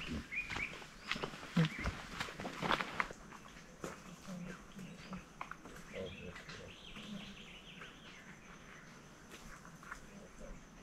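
Footsteps crunching on a dirt path for the first few seconds, then birds chirping in quick, repeated calls over a faint steady high tone.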